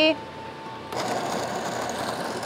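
De'Longhi TrueBrew coffee maker's built-in grinder starting up about a second in and running steadily as it grinds beans at the start of a brew cycle.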